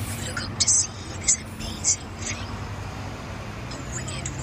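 Indistinct speech, mostly heard as short hissy s-sounds, over a steady low rumble of city traffic.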